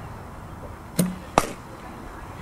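A softball bat hitting a pitched ball: two sharp cracks a little under half a second apart, about a second in. The first carries a brief low ring and the second is slightly louder.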